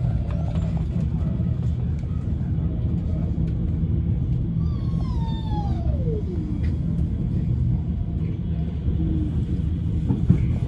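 Stockholm metro train running along the track, heard from inside the car: a steady low rumble. About five seconds in, a whine slides down in pitch over about two seconds.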